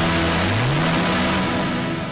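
Live worship-band music in a church service: held low notes, one sliding up about half a second in, over a dense high wash. It dies away near the end as the song finishes.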